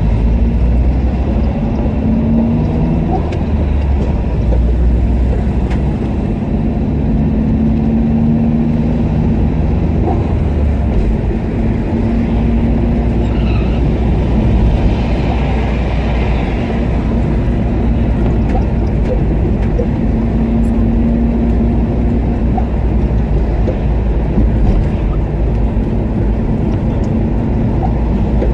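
Car engine and road noise heard from inside the cabin: a steady low rumble as the car creeps along in traffic.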